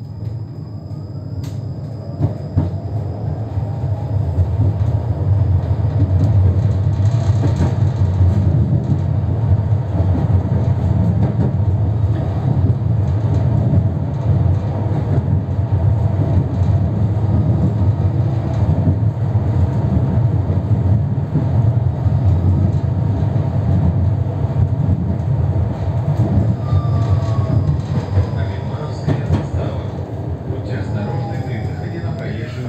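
Tram running on steel rails, heard from inside the car: a low rumble that grows louder over the first several seconds as the tram pulls away and gathers speed, then holds steady. Near the end a second tram passes close by on the next track.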